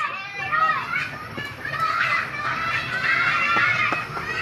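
A group of children calling out and shouting, several high voices overlapping at once.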